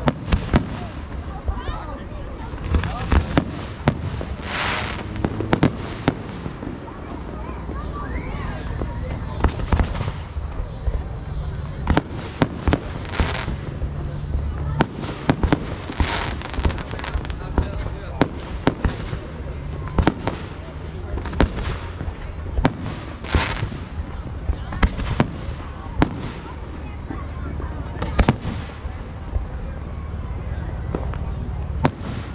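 Aerial fireworks shells launching and bursting in a rapid, irregular series of sharp bangs and pops. A few bursts are followed by a brief crackling hiss.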